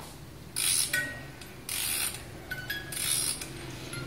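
A wind-up musical toy's clockwork spring being wound by hand: its ratchet clicks in three winding strokes, about a second apart.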